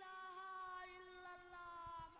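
A boy's voice holding one long drawn-out note that sinks slowly in pitch.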